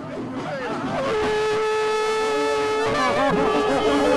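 An ivory tusk horn (elephant-tusk trumpet) is blown in one long, steady note held for about two seconds, starting about a second in. A lower note and voices follow near the end.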